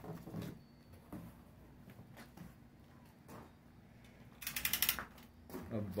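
Hands handling an opened cardboard box packed with black plastic sheeting: faint rustles and light knocks, then a brief burst of rapid crackling about four and a half seconds in.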